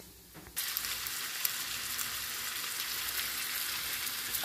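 Sliced onion and freshly added ground beef sizzling in olive oil in a frying pan, a steady hiss with light crackles. It starts suddenly about half a second in.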